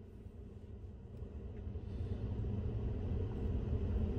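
Low vehicle rumble heard from inside a parked truck's cab, growing steadily louder from about a second in.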